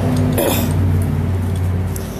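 Steady low mechanical hum, with a brief clatter about half a second in.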